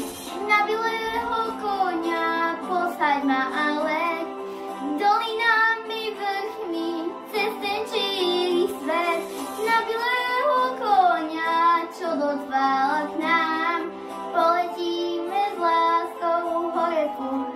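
A young girl singing a Slovak song into a handheld microphone, with a steady musical accompaniment beneath her voice.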